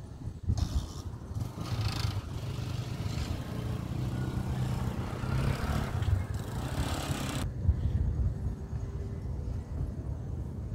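A motor vehicle passing close by on the road, its tyre and engine noise swelling over a few seconds and dropping away about seven and a half seconds in, over a steady low rumble.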